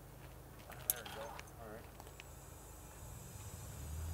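Faint voices with a sharp click about a second in. A steady high hiss comes in about halfway, and a low steady hum starts near the end.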